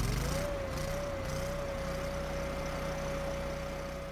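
Kohler ECH-series EFI V-twin engine just after starting, picking up speed in the first half second and then holding a steady high speed of about 3,700 RPM. It runs evenly now that the ECU has learned and calibrated the throttle position sensor.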